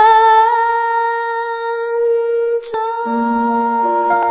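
Female vocalist holding one long sustained note, with a brief break about two and a half seconds in, then holding a note again as soft keyboard chords come in beneath her.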